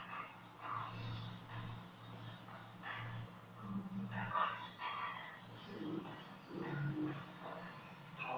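A man's voice speaking in Taiwanese Hokkien, in bursts with short gaps, on a dull low-quality recording.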